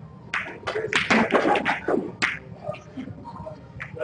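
Snooker balls clicking: the cue tip strikes the cue ball and the balls knock together, several sharp clicks in the first couple of seconds, with people talking in the background.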